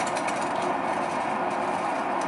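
Electric potter's wheel running steadily, a constant motor hum and whir with no change in speed.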